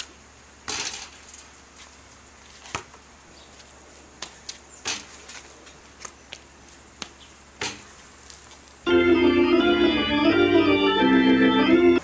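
A few scattered faint knocks and thumps, then organ music starts loudly about nine seconds in and carries on with held, chord-like notes.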